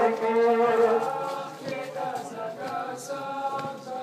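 A crowd of men's voices chanting together in Muharram mourning, louder for the first second and then quieter.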